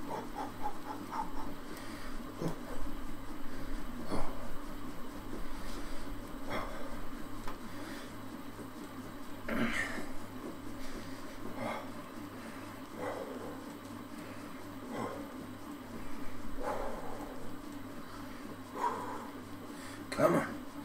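A man breathing hard while pedalling an exercise bike: short, heavy breaths every second or two over a steady low hum.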